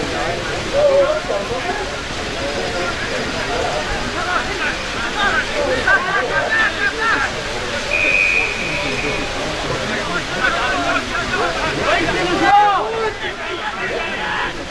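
Players calling out to each other across a football ground, with a single steady blast of an umpire's whistle lasting about a second, a little past halfway.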